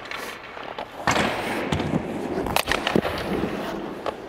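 Hockey skate blades scraping and carving on rink ice, starting about a second in, with a few sharp clacks near the end.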